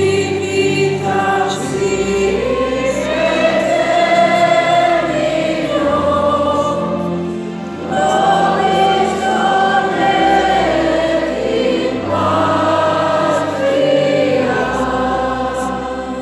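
A choir singing a slow hymn in long held notes, over low sustained accompanying notes.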